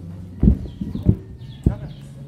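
Kickboxing sparring: strikes thudding against padded shin guards and gloves, three sharp hits about half a second apart.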